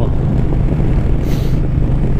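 V-twin cruiser motorcycle engine running steadily at road speed, heard from the handlebars with wind buffeting the microphone. A brief hiss cuts in about one and a half seconds in.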